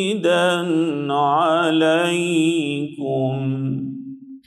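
A male qari reciting the Quran in the melodic, ornamented style through a microphone: the voice bends up and down in pitch, pauses briefly near three seconds in, then holds a long steady note near the end.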